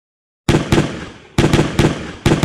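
Automatic rifle gunfire sound effect for an M16: after a moment of silence, three shots about a quarter second apart, then a faster burst of shots.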